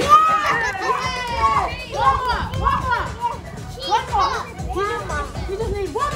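Children shouting and calling out excitedly in high voices that rise and fall, one after another, over background music.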